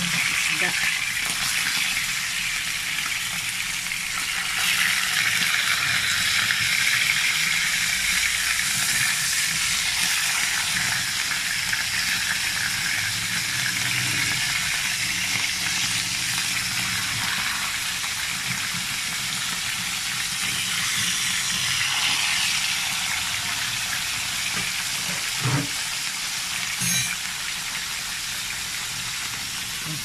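Round scad (galunggong) frying in hot oil in a pan: a steady sizzle, with two short knocks near the end.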